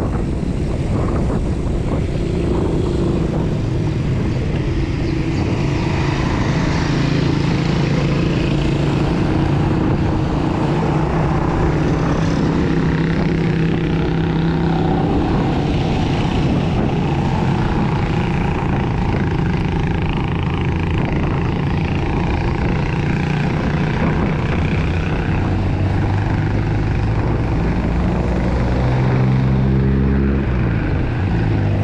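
Wind rushing over the camera microphone of a moving bicycle as a steady loud noise, with the drone of motor-vehicle engines in the traffic alongside. Near the end one engine rises and falls in pitch as a vehicle passes close by.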